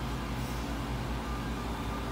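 A steady low background hum, with no voice.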